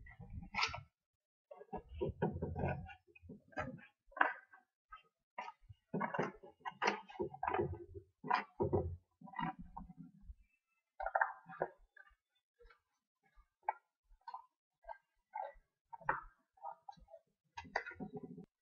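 Scissors snipping through folded black chart paper in irregular short cuts, with the stiff paper rustling as it is handled.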